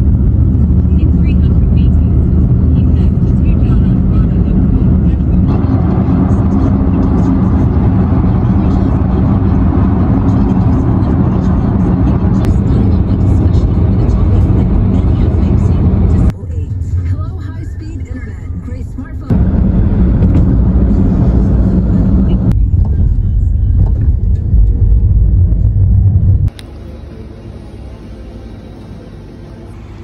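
Road and engine noise inside a moving car's cabin: a loud, steady rumble that changes abruptly several times. About three seconds before the end it drops to a much quieter steady background.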